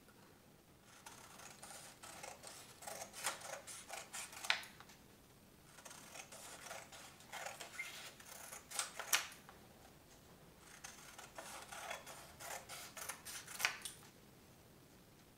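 Scissors cutting yellow construction paper into long strips: three runs of short snips, each ending with a louder, sharper snap.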